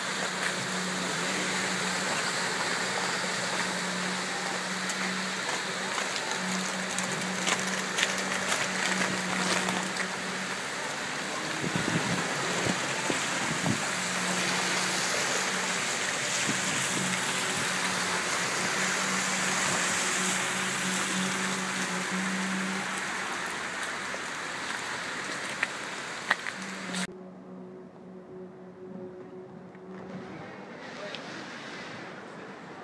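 Steady rush of water and tyres hissing through a flooded, hail-strewn street as cars drive past, with a low engine hum coming and going. The sound drops sharply about three seconds before the end.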